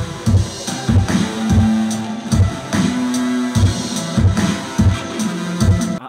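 Hip-hop instrumental with no vocals: heavy kick drum hits under long held bass notes, with an electric guitar in the mix, as the track plays out its ending.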